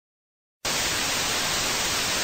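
Television static sound effect: a steady hiss of white noise that cuts in suddenly about half a second in.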